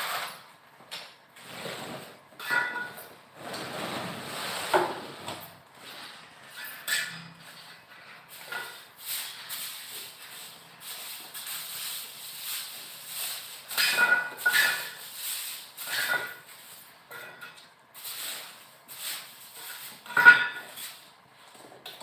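Irregular scraping and knocking of a small hand tool working a cement floor and wall base, in uneven bursts with short clinks, the loudest knock near the end.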